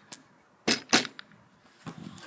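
Two sharp clicks or knocks about a quarter second apart, then a fainter one near the end, with near silence between them.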